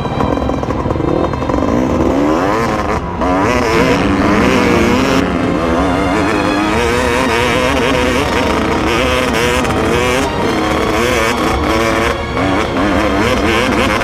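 Dirt bike engine revving as it pulls away and accelerates, its pitch climbing and dropping again and again through the gear changes, with a brief drop about three seconds in.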